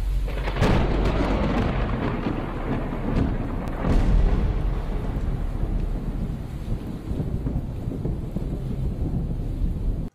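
Cinematic logo-intro sound design: a deep, continuous rumble with sharp booming hits about half a second in and again around four seconds in, stopping abruptly at the end.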